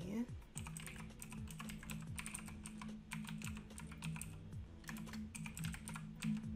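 Computer keyboard typing in irregular runs of keystrokes while sign-in details are entered, over a steady low hum.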